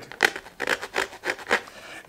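Textured plastic vacuum storage bag with an embossed grid of air channels on its inner surface, rubbed between the fingers: a series of short rasping scrapes, several a second.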